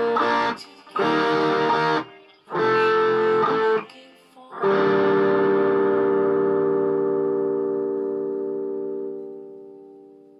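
Distorted electric guitar, a Jackson Pro SL2 through an EVH 5150III amp, playing a song's closing chords: three short chord stabs with brief gaps, then a final chord struck about halfway through and left to ring, slowly fading away near the end.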